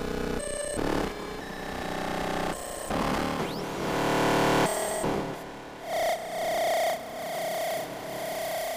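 Eurorack modular synthesizer playing a self-generating Krell-style patch, its notes chosen pseudo-randomly by a shift-register gate and CV sequencer. It gives an irregular string of pitched electronic tones and noisy bursts, each changing abruptly after half a second to two seconds.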